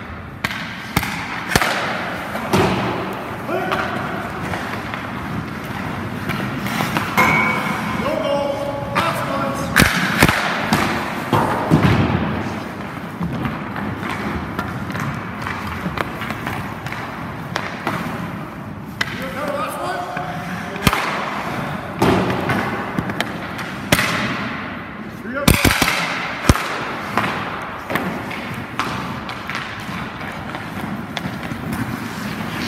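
Hockey practice on an indoor rink: pucks and sticks striking at irregular intervals, giving repeated sharp knocks and thuds, over a bed of indistinct voices.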